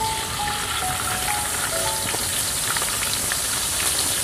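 Hot oil sizzling steadily in a wok as food fries, with a few short melody notes of background music in the first two seconds.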